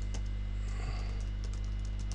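Typing on a computer keyboard: a quick, uneven run of key clicks over a steady low electrical hum.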